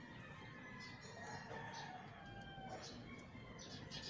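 A faint rooster crow, one long call that falls slightly in pitch, with light clicks from small parts being handled.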